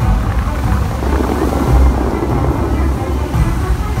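Dubai Fountain's water jets rushing and spraying, with a deep, uneven low rumble underneath and music playing. The rush of spray is strongest through the first three seconds.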